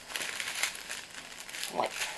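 Thin plastic packaging crinkling as a strip of small plastic sachets of diamond-painting drills is lifted and handled, in irregular crackles.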